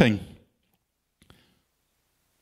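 A man's voice trails off in the first half-second, then near quiet with one faint, short click a little over a second in as a metal water bottle is picked up to drink from.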